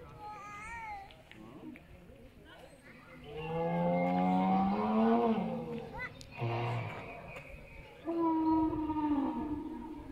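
Animatronic sauropod dinosaur's recorded call played through a loudspeaker. A long, deep call that rises slightly in pitch starts about three seconds in and is the loudest sound. A short low grunt follows about a second later, then a second, higher call that falls away near the end.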